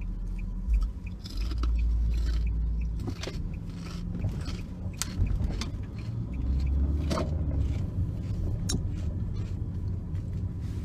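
Low rumble in a car cabin, with the crunch of kettle chips being chewed and a few sharp clicks.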